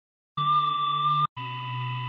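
A sampled chop in Logic Pro for iPad's Quick Sampler, triggered twice from the chord strips. It sounds as two held pitched notes of about a second each, both cut off cleanly. The second is lower and quieter than the first.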